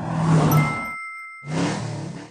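Logo sting sound effect: a car engine revving past with a whoosh and a bright ding held for about half a second. A short gap follows, then a second, shorter burst of engine sound.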